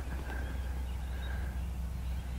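Quiet outdoor background: a steady low hum under faint, even ambient noise, with no distinct event.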